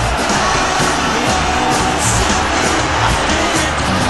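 Football stadium crowd noise from the match broadcast, a dense steady roar, with a background music track playing on underneath.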